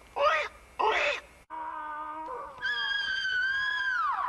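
Two short squawking vocal sounds, then a steady, high pitched wail that steps higher about two and a half seconds in and slides down in pitch at the end. It is a moaning creature-voice effect.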